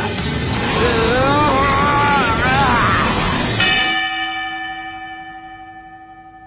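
Loud crowd noise with a drawn-out shout. About three and a half seconds in, a boxing ring bell is struck once, signalling the end of the round, and rings on, slowly fading.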